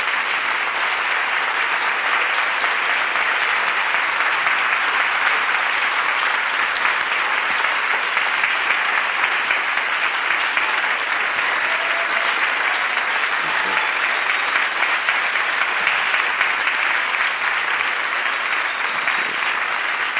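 A large audience applauding, steady and sustained throughout.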